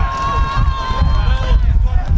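Players shouting to each other during an outdoor football match, one call held for about a second and a half, over a steady low rumble.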